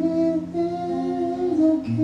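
Slow acoustic ballad: a singer holds long, slow sung notes, humming-like, to an acoustic guitar.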